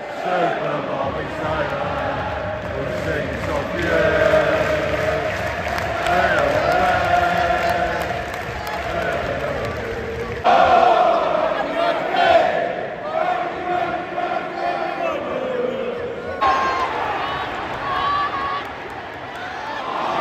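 Large football crowd singing and chanting together in the stands, thousands of voices. The sound changes abruptly about halfway through and again a few seconds before the end.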